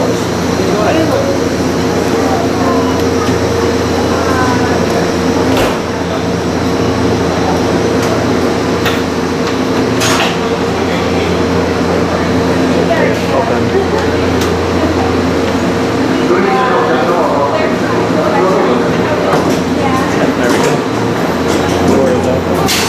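Steady low hum of the stationary Narita Express trains, with background voices of people around the platform and a few sharp clicks, the clearest about six seconds in and about ten seconds in.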